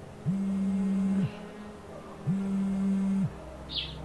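A mobile phone vibrating in a pocket: two steady low buzzes, each about a second long, a second apart, as with an incoming call.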